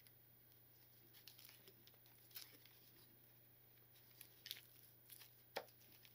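Near silence broken by a few faint clicks and rustles as small wooden kit pieces, still covered in plastic film, are handled and pushed into place.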